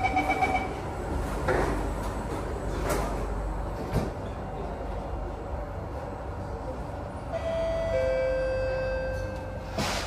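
A Singapore MRT train's door-closing chime beeps rapidly right at the start, and the sliding doors shut with a rumble in the first few seconds. From about seven seconds in, the train's traction motors set up a steady whine that steps down in pitch as it starts pulling out of the station.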